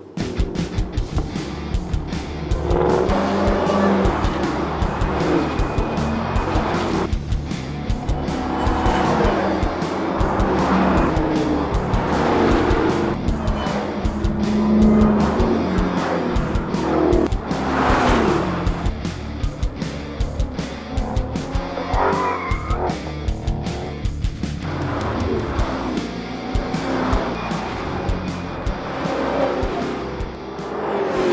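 Background music with a steady beat, mixed with Dodge Challenger V8 engines revving up and down as the cars drive hard around a race track, with tyres squealing.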